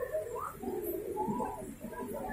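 A bird cooing in repeated low calls, dove-like.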